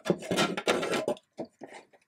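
Irregular rubbing and scraping of fingers working the untrimmed ends of a fly strip stuck along the edge of a glass terrarium door; the uncut strip ends are what keep the glass from fitting. The scraping is busiest in the first second, then comes as a few separate short scrapes.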